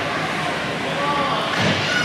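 Ice hockey rink ambience: a steady haze of game noise with faint voices of spectators and players, in a large indoor rink.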